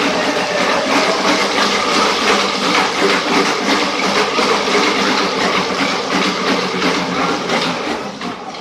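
Dog-powered roller-bed treadmill running fast under a dog: its belt and rows of rollers make a steady, loud rolling rattle, with rapid ticking from paw strikes and turning rollers.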